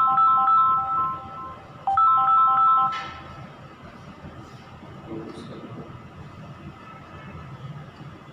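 A mobile phone ringtone: a short electronic melody of bell-like notes plays twice and stops abruptly about three seconds in.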